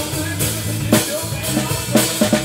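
Live band playing, heard from right beside the drum kit: close drums with a strong hit about once a second over a steady low bass part.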